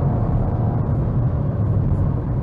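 Cabin sound of a 2017 Suzuki Swift SHVS mild hybrid under acceleration on a fast road. Engine and road noise make a steady low drone as the car nears 110 km/h.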